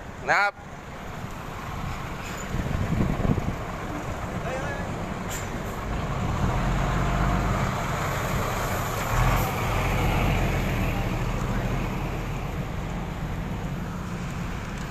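Road traffic on a multi-lane road, with a heavy truck's engine rumble and tyre noise swelling in the middle and then easing off.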